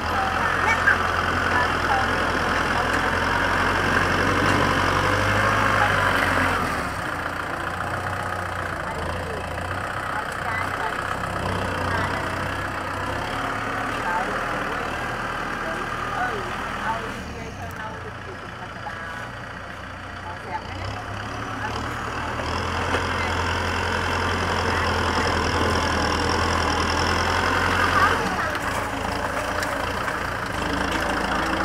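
Kubota M6040 SU tractor's four-cylinder diesel engine running as its front blade pushes soil. It is louder for the first six seconds and again in the last several seconds, and eases off in between.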